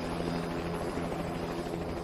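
Instrumental ending of a pop song, without vocals: a held chord over a fast-pulsing low bass.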